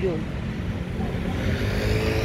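Road traffic: a motor vehicle's engine comes up over the steady street noise in the second half, as if approaching.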